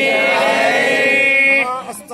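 A priest chanting a Sanskrit mantra, holding one long steady note that falls away about a second and a half in.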